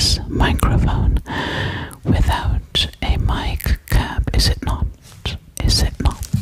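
A woman's breathy whispering very close to a microphone, her breath puffs carrying heavy low rumble onto the capsule.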